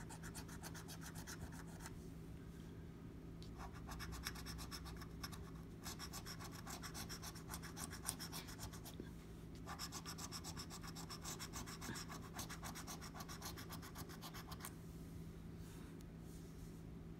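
A coin scratching the coating off a paper scratch-off lottery ticket in rapid back-and-forth strokes, in four runs with short pauses between them, stopping shortly before the end.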